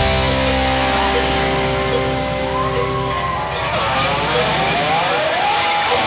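Live hard-rock band holding a sustained, distorted electric-guitar chord over a held low bass note, with guitar notes sliding up and down in pitch in the second half. The low note drops out near the end, and there are few drum hits.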